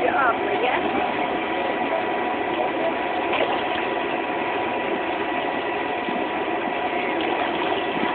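Electric air blower of an inflatable water slide running, a steady whirring drone with a constant hum.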